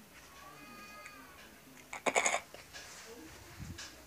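Handling noise from a handheld phone camera being moved: a loud brief rustle about two seconds in and a low bump near the end, after a faint high-pitched wavering call about half a second in.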